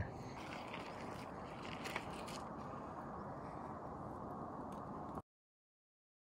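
Steady low rushing background noise with a faint click about two seconds in, cutting off suddenly a little after five seconds.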